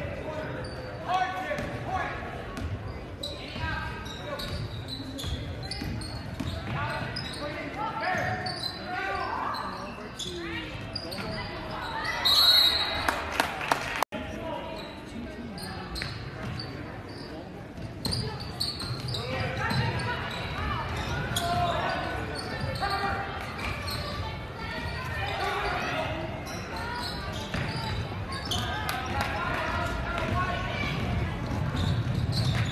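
Basketball game sound in a large echoing gym: a ball bouncing on the hardwood, and players' and spectators' voices calling out indistinctly throughout. About halfway through there is a short, loud, high-pitched sound.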